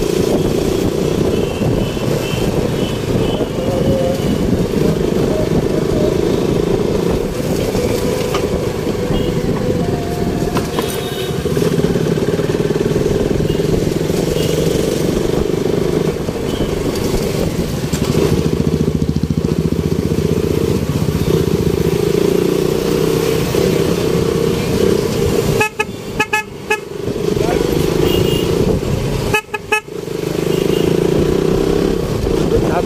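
Riding a motorcycle through city traffic: steady engine and road noise, with short car and scooter horn honks a few times.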